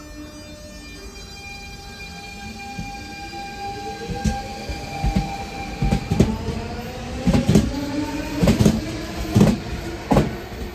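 DSB S-tog electric train (SA class) pulling away: its traction motors give a whine of several tones that rises steadily in pitch as it gathers speed. From about four seconds in, the wheels knock over rail joints in pairs, louder and more often toward the end.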